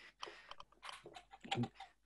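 Irregular clicks and scratchy rustles of cardboard and an elastic band being handled, as an elastic band is pushed through holes in a cardboard model car. The loudest click comes about one and a half seconds in.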